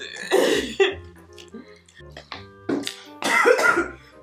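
Two bursts of coughing, one near the start and a longer one about three seconds in, over quiet background music with steady held notes.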